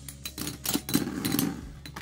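Metal Fight Beyblade tops spinning against each other in a plastic stadium: a quick run of sharp metallic clicks and knocks as their metal wheels collide, with a scraping rattle about a second in as the tops grind together.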